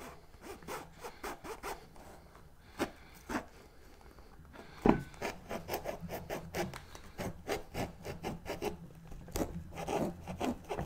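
Knife cutting and sawing through the thick peel of a grapefruit, a quick run of short strokes, with one louder thump about five seconds in.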